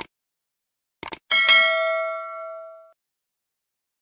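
Sound effects for an animated subscribe button: a mouse click, a quick double click about a second in, then a bright bell ding that rings out for about a second and a half, the notification-bell chime.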